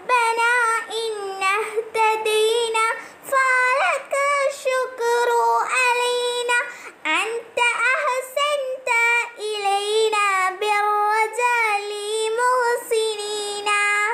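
A child's voice singing an Arabic verse solo, without accompaniment, in long held, wavering notes, with short breaths between the lines.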